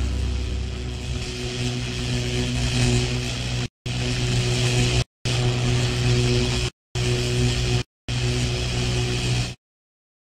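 Sound effect for an animated channel-logo ident: a loud, dense buzzing noise over a steady low hum. It drops out to silence four times for a fraction of a second, then cuts off suddenly near the end.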